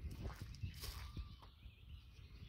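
Soft, irregular footsteps crunching on gravel, with a few faint high chirps in the background.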